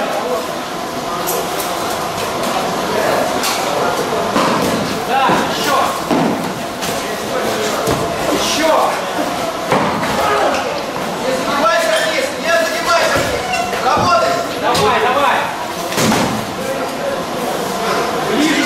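Padded practice swords striking round shields and padded armour, with bodies colliding, in a string of irregular sharp blows every second or two during a full-contact bout. The blows ring through a large hall over background voices.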